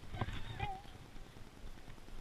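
A few faint knocks and rattles from a chain-link fence as a hooked largemouth bass is hauled up and over it, mostly in the first second.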